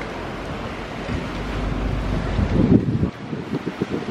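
Wind buffeting the microphone of a handheld camera carried while walking, a low rumble that falls away about three seconds in, followed by a few short knocks.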